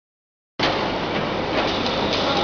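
Steady machinery noise with a low electrical hum, cutting in abruptly about half a second in after dead silence.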